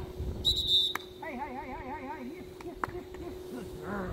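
A short, sharp blast on a dog-training whistle about half a second in, recalling a Boykin spaniel puppy to bring in its retrieve. It is followed by a man's wavering, warbling call to the puppy, lasting about a second.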